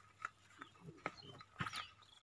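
Faint outdoor background with a few short high chirps, one gliding downward near the end, and scattered light clicks.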